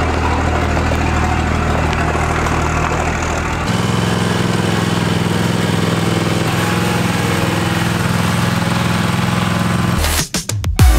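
A first-generation Dodge Cummins diesel idling steadily. About a third of the way in the sound cuts to a Toro zero-turn mower's engine running as the mower is driven up onto a flatbed trailer.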